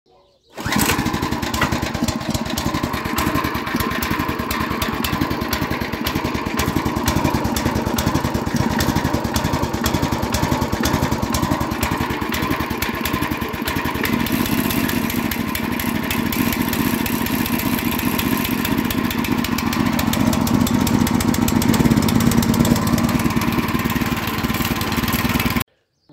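Petrol engine of a WEMA WM900 motor hoe running steadily. It gets a little louder in the second half and cuts off suddenly near the end.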